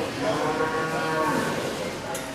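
A Brahman cow mooing: one long, drawn-out call that rises slightly and falls away, lasting nearly two seconds.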